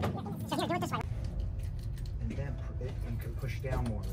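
Soft, indistinct talking over a steady low background rumble in an indoor shooting range.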